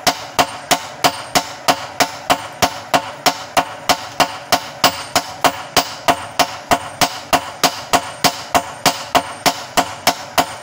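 Hammers striking red-hot bearing steel on an anvil while forging a machete blade. Quick, even blows come about three a second, each with a short metallic ring.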